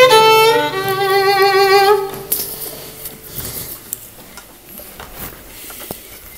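The closing chord of a folk string band, fiddle with vibrato on top, held for about two seconds and then stopped. Faint room noise and a few small knocks follow.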